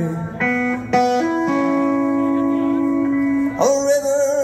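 Live band playing, with an electric guitar taking a fill of sustained notes between sung lines, one note held long. The singer's voice comes back in near the end.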